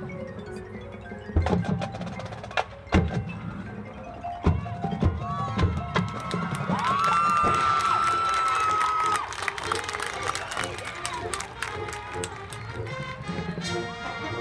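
High school marching band playing its field show, mostly percussion with several sharp hits in the first half, then a long held high note from about halfway through, followed by quick, busy percussion.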